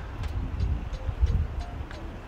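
Low, uneven rumble of wind and handling on the microphone in the rain, with a few faint ticks and soft background music.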